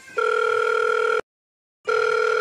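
Telephone ringing tone of an outgoing call waiting to be answered: an electronic ring lasting about a second, a short silence, then a second ring starting near the end.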